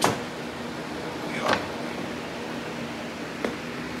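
A sharp knock at the start, a short scrape about a second and a half in and a light click near the end, from hand work loosening a snowmobile's front ski and its hardware, over the steady hum of a box fan.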